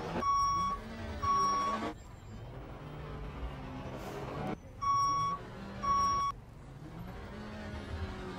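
Vehicle reversing alarm beeping over engine noise: two half-second beeps near the start and two more about five seconds in.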